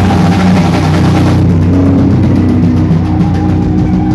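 Live rock band playing loudly on stage, with electric guitars, bass and drum kit. The bright top end drops back about a second and a half in while the bass and beat carry on.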